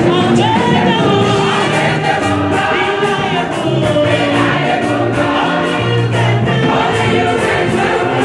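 Women's gospel choir singing in full voice, led by a solo singer on a microphone, over a steady percussion beat and bass accompaniment.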